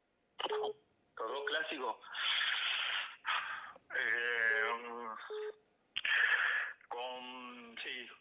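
A man's voice coming through a telephone line, thin and cut off at the top, in short hesitant stretches with brief pauses between them, with some hiss on the line.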